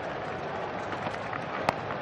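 A single sharp crack of a cricket bat hitting the ball about a second and a half in, over a steady murmur from the stadium crowd.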